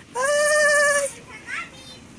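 A single loud, high-pitched drawn-out call held for about a second, wavering slightly in pitch.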